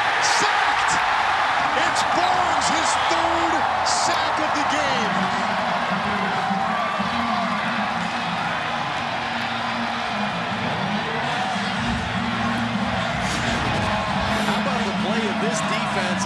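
Large stadium crowd cheering loudly as the home defence sacks the quarterback, the roar strongest at the start and holding on, with music underneath.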